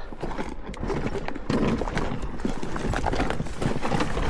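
Irregular knocks and clatter as a dirt bike is paddled slowly over rock, boots and tyres striking the stone, over a steady low rumble.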